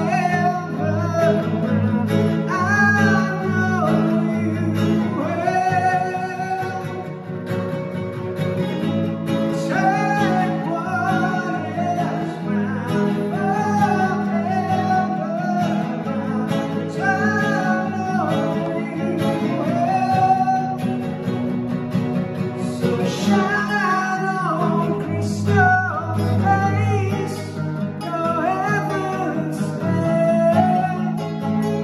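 A man singing to his own acoustic guitar: a song performed live, the voice carrying a melody over the guitar's steady accompaniment.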